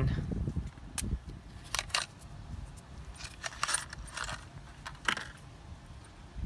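Metal tools clinking as a spark plug socket, extension bar and adapter are handled and fitted together, with a new spark plug going into the socket: a handful of sharp, separate clinks spread over several seconds.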